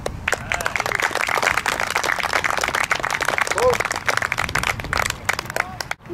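Audience applauding, with many hands clapping and a voice or two among them; the clapping stops suddenly just before the end.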